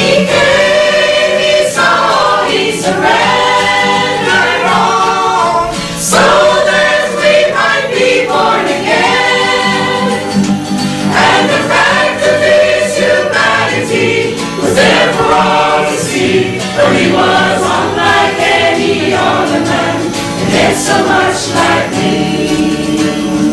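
A mixed choir of women and men singing a gospel song.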